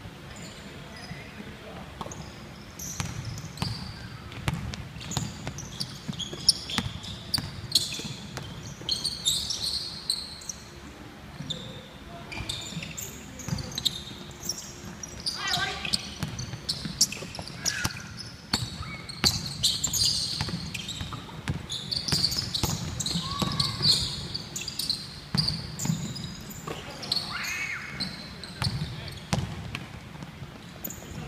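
Basketball bouncing on a wooden gym floor during a game, a series of knocks that keep coming, with players' short shouts in a large, echoing hall.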